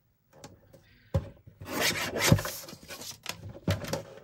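Sliding-blade paper trimmer cutting a strip of paper: a sharp click, then a rasping scrape of the blade running along its rail through the paper for about a second and a half, and a few knocks near the end as the trimmer is picked up.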